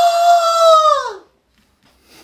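A man's long, loud, held yell on one high pitch, his fist cupped at his mouth; the pitch drops and the cry stops a little over a second in.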